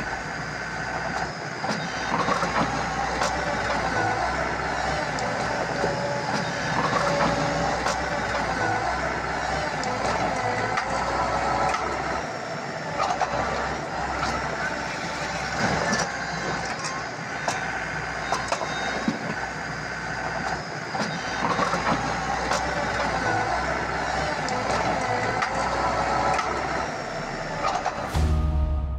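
Skid-steer loader's engine and hydraulics running under load, a steady whine that dips in pitch and recovers several times as it works, with scattered knocks and clatter of rock.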